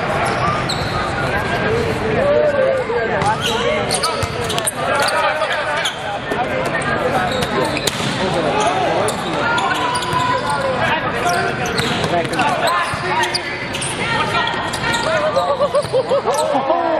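Busy volleyball tournament hall: many overlapping voices and shouts from players and spectators, with the sharp smacks of volleyballs being hit and landing, from this court and the courts around it, all in the reverberant space of a large hall.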